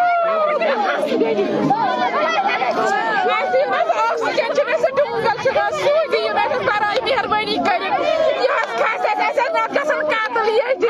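Several women's voices, loud and overlapping throughout: crying out in grief and talking agitatedly over one another, with one woman's voice close up toward the end.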